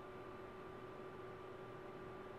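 Faint steady room tone: a low hiss with a thin constant electrical hum, and no distinct sounds.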